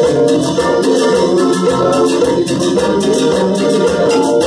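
A cumbia santafesina band playing live: a sustained melody line over bass, with a steady rattling percussion beat.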